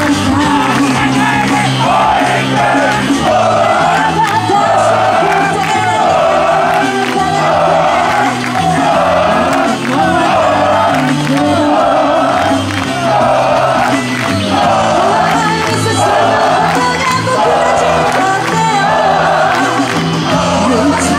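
A female idol singing a pop song live into a microphone over a backing track played through PA speakers, with fans shouting along.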